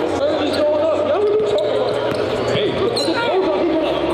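A basketball bouncing on a gym court, with a couple of sharp hits, among men's voices talking and calling out.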